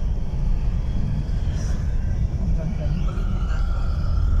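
Steady low rumble of a moving vehicle's engine and road noise heard from inside the cabin, with faint voices in the background.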